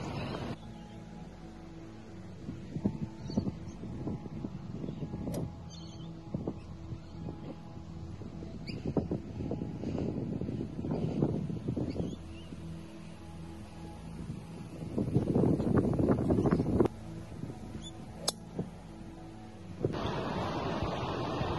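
Wind buffeting an outdoor microphone as an uneven low rumble that gusts louder twice, around ten and sixteen seconds in, with a couple of sharp clicks.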